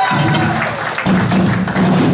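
Punk rock band starting to play live: bass guitar notes with drum hits, the low notes growing steadier about a second in.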